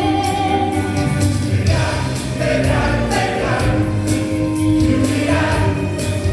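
A stage musical number: voices singing together over an instrumental backing, with long held notes.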